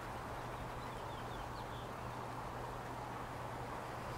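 Steady outdoor ambience: an even background noise with a constant low hum, and a few faint, short high chirps in the first half.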